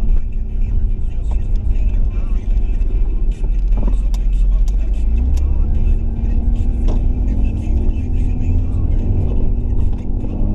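A car's engine and road noise heard from inside the cabin: a steady low rumble, with the engine note rising from about halfway through as the car picks up speed.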